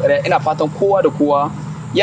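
A person talking, over a steady low hum.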